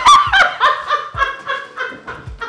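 A woman laughing in quick repeated bursts, a mocking snicker, loudest at the start and trailing off.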